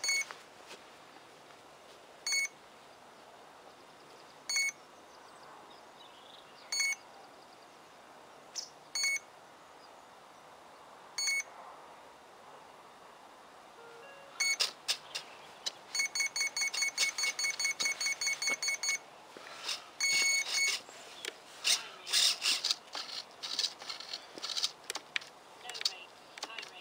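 Electronic beeping from a radio-controlled model aircraft's electronics during receiver binding. A single high beep sounds about every two seconds, then the beeps come in a fast run of several a second for about three seconds, with scattered clicks around them.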